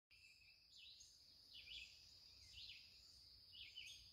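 Faint birdsong: a single bird repeating a short call about once a second, over a steady faint high-pitched hum.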